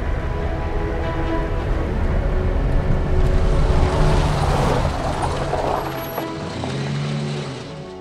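A Jeep Wrangler's engine runs with a low rumble as it drives in and pulls up, under background music with sustained tones. The rumble drops away about six seconds in as the vehicle stops.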